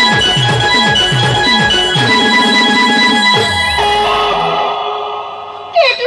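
Timli dance music from a band: a steady beat of drum strokes that drop in pitch, under held keyboard notes. The drums stop about three and a half seconds in, the keyboard notes fade, and a voice cuts in at the very end.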